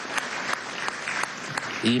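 Audience applauding, with many separate hand claps standing out.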